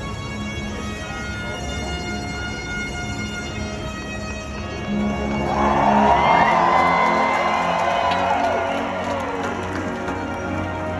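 A marching band playing held notes under a cheering crowd; the cheering and shouting swell louder about five seconds in.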